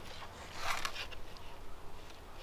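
A short rustling scrape just over half a second in, with a few faint ticks around it: hands working loose soil and handling a plastic seedling tray while transplanting seedlings.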